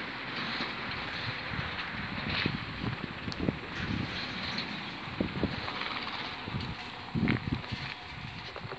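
Wind rushing on a phone microphone outdoors: a steady hiss with scattered low thumps and gusts, the loudest about seven seconds in.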